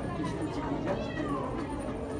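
A domestic cat meowing once, about a second in, over background voices.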